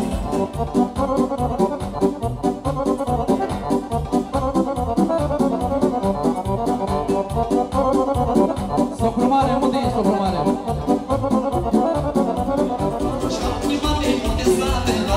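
Live wedding-band music: an electronic keyboard and an accordion playing a fast instrumental dance tune over a quick, steady programmed beat.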